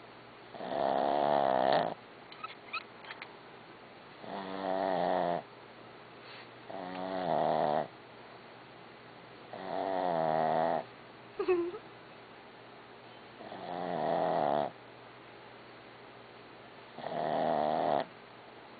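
A dog snoring in a slow, even rhythm: six pitched snores, each about a second long, coming roughly every three seconds. A few brief clicks and one short squeak fall between snores.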